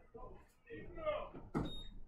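Faint, low-level talking with no clear words, with a brief knock about one and a half seconds in.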